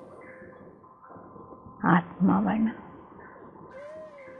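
A woman speaks a couple of words about two seconds in, between pauses, over faint sustained background music.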